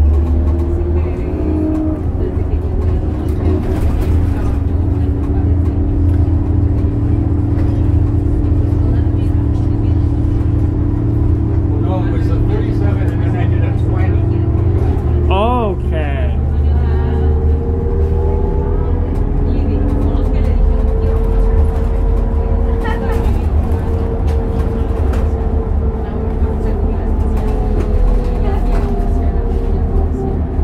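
Inside a 2002 New Flyer D40LF diesel city bus under way: a steady low engine and drivetrain drone with a whining tone that shifts in pitch about two-thirds through. A short wavering tone rises and falls about halfway.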